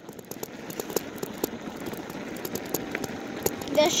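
Bicycle rolling over a rough, bumpy road: a steady tyre rumble with many small irregular rattles and knocks as the bike and the handheld phone jolt.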